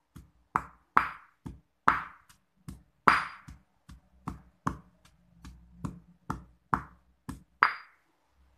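Stone pestle pounding soaked dried anchovies in a stone mortar: a run of sharp knocks, about two a second, with some strikes harder than others.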